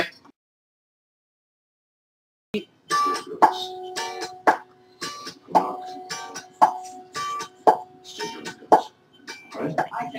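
Small wooden lap zither being plucked by hand: a string of single notes, each with a sharp attack and a ringing tail, starting about two and a half seconds in.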